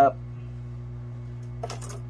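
Hot air rework station running with a steady hum, heating the solder on a laptop charge port. A brief burst of clicks comes near the end.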